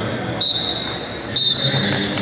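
Wrestling shoes squeaking on the mat, twice, about a second apart: two short, sharp, high-pitched squeaks as the wrestlers move their feet in their stance. Under them runs a low murmur of arena voices.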